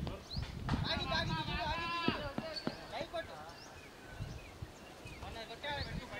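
Distant, unclear voices of cricket players calling and talking on the field, loudest in the first couple of seconds, over a low irregular rumble.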